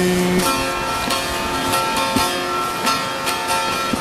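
Bağlama (Turkish long-necked saz) playing an instrumental passage between sung lines of a folk song, its plucked strings ringing under a steady run of strokes. A man's held sung note ends about half a second in.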